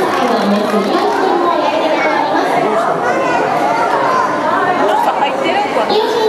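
Crowd chatter: many people talking at once, with overlapping voices and no single speaker standing out.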